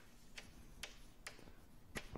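Chalk writing on a blackboard: a few faint, irregularly spaced taps and ticks as the chalk strikes the board.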